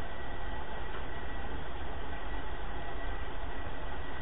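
Steady background hiss with a low hum and a faint, steady high whistle: the room and recording noise of an old lecture recording.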